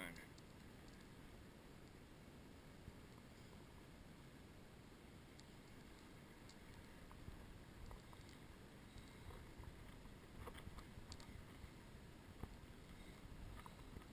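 Near silence: faint water lapping against a small boat's hull, with a few scattered light clicks.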